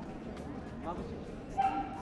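Open-air ambience of a busy square, people murmuring and moving, with brief voice sounds about a second in and a short, high held vocal tone near the end.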